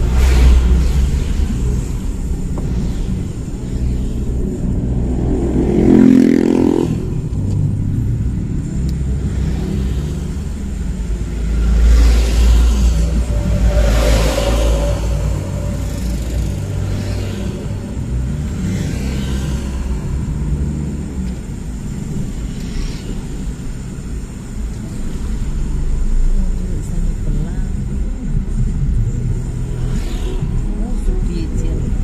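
Steady low road and engine rumble of a car driving in traffic. Louder swells come as vehicles pass close by, one with an engine note about six seconds in and a heavier one around twelve to fourteen seconds in.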